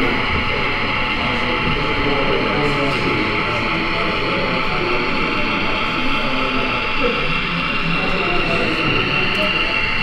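A model train, a BR Class 35 Hymek diesel locomotive hauling tank wagons, runs steadily past with a thin whine that rises slightly in pitch in the second half. Background crowd chatter fills the hall.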